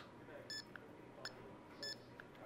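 Two short high electronic beeps from the studio flash gear, about half a second in and near the end, with faint clicks between, as the flash exposure is being reset for a change of aperture.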